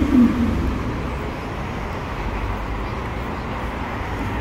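Street traffic noise from cars passing on a city street, a steady low rumble. A brief low sound that falls in pitch comes right at the start.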